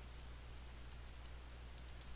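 Computer keyboard being typed on: several faint, light key clicks at uneven spacing as a word is typed, over a steady low hum.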